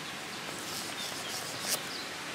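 Quiet outdoor ambience: a steady hiss with a few faint, short bird chirps about a second in, and a brief rustle near the end.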